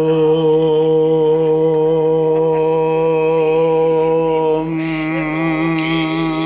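Sustained mantra chanting: one long held low note with a slight waver, the upper tones changing near the end.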